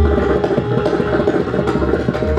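Pakhawaj solo: a fast, dense run of strokes on the barrel drum, with deep resonant bass strokes, over the steady held melody of a harmonium lehra.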